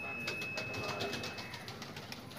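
Pigeons cooing in a loft, with a voice in the background.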